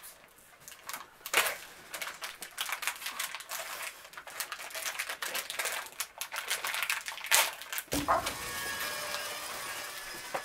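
Plastic candy wrapper of a Sour Skittles packet crinkling and crackling as it is torn open and handled, in a dense run of short sharp snaps. The loudest snaps come about a second and a half in and again near the end.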